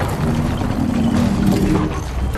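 Film sound effects of huge stone-and-metal maze walls moving, a continuous heavy mechanical rumble and grinding with most of its weight low.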